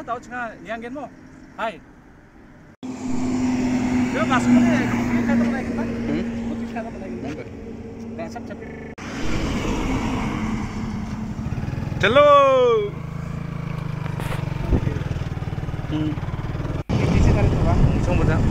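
Engine hum and road noise from a moving vehicle on a highway, in several short cuts, with wind on the microphone. A brief, loud, falling-pitch tone sounds about twelve seconds in.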